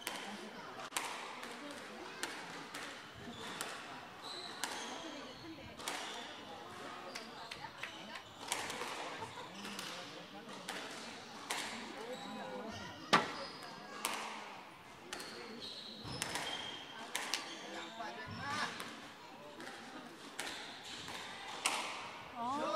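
A squash ball being struck by rackets and hitting the court walls through a rally, a sharp knock every half second to a second, with one especially loud crack about midway.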